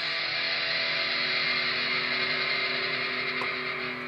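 Electric guitar through a Marshall amplifier holding a final chord that rings on steadily as the song ends.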